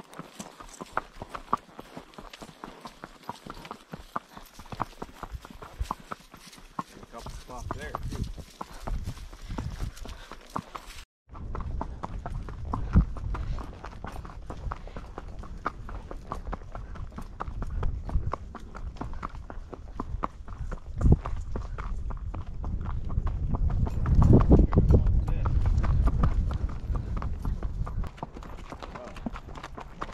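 Horses' hooves clip-clopping on a dirt trail at a walk, a steady run of dull knocks. The sound cuts out briefly about a third of the way in, and a low rumble underneath grows louder near the end.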